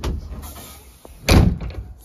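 The hard tonneau lid over a Ford Ranger Wildtrak's pickup bed is swung shut and lands with one heavy slam a little past the middle.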